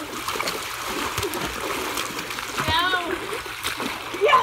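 People splashing water by hand in a swimming pool: continuous churning and slapping of water with many small sharp splashes. One short high-pitched voice call cuts in about three quarters of the way through.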